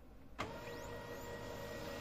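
Brother DCP-1512E laser printer starting a print: a click about half a second in, then its motors whir up with a faint rising whine and run steadily. It is printing again after the drum counter reset, the Replace Toner error cleared.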